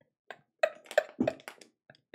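A man laughing quietly in short breathy bursts, about three a second, trailing off near the end.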